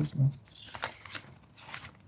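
A short spoken "hein", then a few scattered light clicks and rustles of desk handling noise while someone searches for a lost page.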